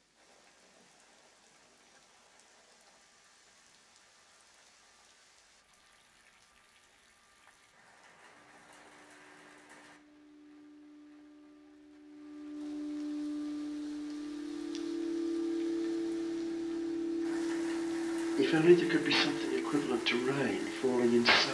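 Near silence, then a soft chord of low held notes enters about eight seconds in and swells. The hiss of steady rain joins near the end.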